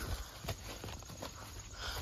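Footsteps through dry leaf litter and twigs on a forest floor: scattered soft crackles and ticks, with low rumbling from the handheld camera being moved.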